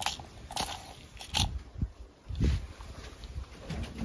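A few short scrapes and taps of a small plastic spoon scooping powder out of a plastic tub and dropping it onto damp seed mix in a metal bowl.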